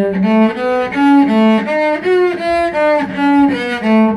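Background music: a solo cello playing a lively melody of short, separate notes, about three a second, stepping up and down in pitch.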